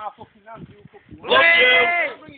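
A person's voice: soft, broken vocal sounds, then a loud, drawn-out wordless cry of about half a second a little past halfway, held at a steady pitch.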